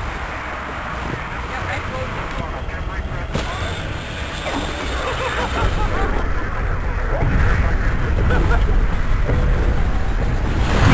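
Indistinct voices and chatter over a steady low rumble of outdoor noise.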